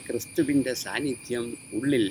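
A man speaking in Malayalam, over a steady, high-pitched chirring of insects.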